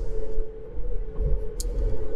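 Road and tyre noise inside a Tesla Model 3's cabin at highway speed, a steady rumble with a steady tone running through it. A short hiss comes about one and a half seconds in.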